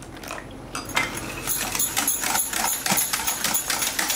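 Water poured into a glass bowl of curd, then a wire whisk beating the curd from about a second in, its metal tines clicking rapidly against the glass bowl.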